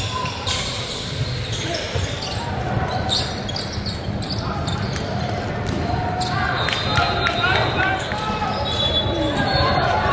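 Live basketball game sound in a large echoing hall: a ball bouncing on a hardwood court and voices of players and spectators. Short, sharp high squeaks of sneakers on the floor come in the second half.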